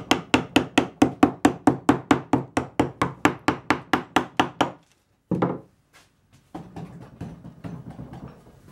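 Carving gouge being tapped repeatedly into linden wood, a rapid even series of sharp strikes at about five a second that stops a little before the five-second mark, followed by one separate knock and fainter scraping of the tool.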